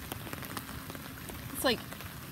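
Rain falling steadily onto the open water of a flooded lake, a continuous hiss made of many small drop splashes.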